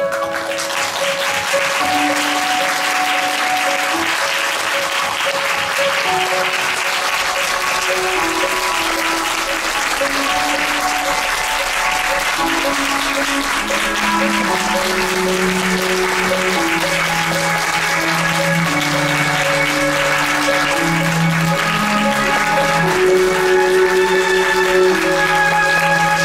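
Theatre audience applauding steadily over instrumental curtain-call music. The applause breaks out suddenly at the start, and a lower bass line joins the music about halfway through.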